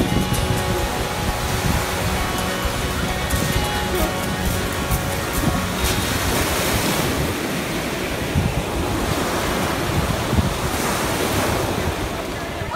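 Lake Huron waves breaking and washing up a pebble beach, a steady rush of surf, with wind buffeting the microphone.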